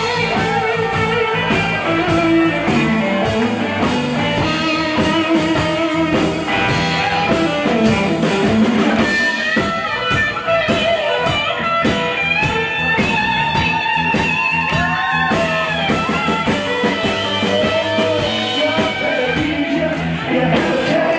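Live rock-and-roll band playing an instrumental break, led by an electric guitar playing lines with bent notes over bass, drums and rhythm guitar.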